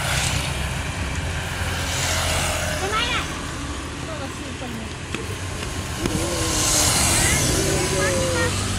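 Roadside traffic: motorbike engines running, with a steady low hum throughout that grows louder near the end as the bikes come close, and faint voices in the background.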